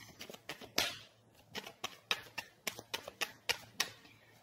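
A deck of tarot cards shuffled by hand: an irregular run of sharp little clicks and flicks, several a second.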